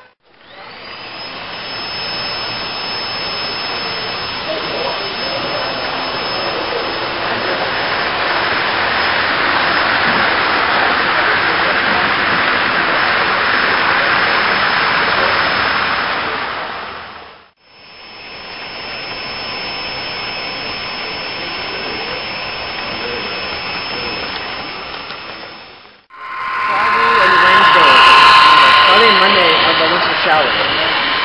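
Model trains running past on a club layout: a steady whir of small motors and wheels on the rails. The sound drops away and returns twice, and the last few seconds are the loudest.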